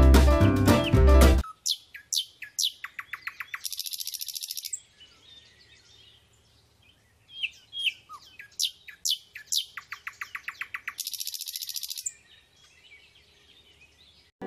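Music cuts off about a second and a half in, then birds calling: short falling chirps and fast trills, with a high buzzing trill twice and a quiet pause midway.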